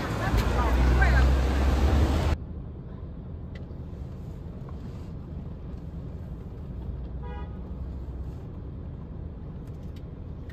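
City street traffic: a bus's engine rumbling past with people's voices close by, cut off abruptly after about two seconds. Then quieter, steady traffic noise, with a short horn toot about seven seconds in.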